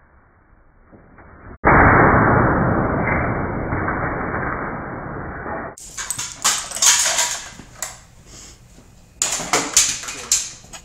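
Laptop being smashed. First comes a sudden loud crash, muffled and dull, that fades over about four seconds. Then, after a cut, come sharp cracks and a clatter of broken plastic pieces as the wrecked laptop is stomped and kicked about on the floor, in two flurries.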